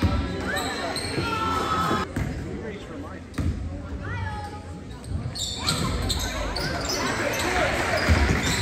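Basketball bouncing on a hardwood gym floor during a youth game, amid spectators' voices echoing in the gym. The crowd noise grows louder about halfway through as play resumes.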